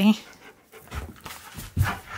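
Husky panting in short breaths, with a dull thump about a second in and another near the end.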